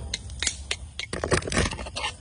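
A metal spoon scraping and clicking against a wooden pestle and mortar, clearing out freshly pounded moist spice paste (kroeung) in a run of short scrapes that grow denser and louder in the second second.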